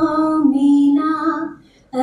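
A woman singing solo into a microphone, holding long steady notes, with a short breath pause near the end.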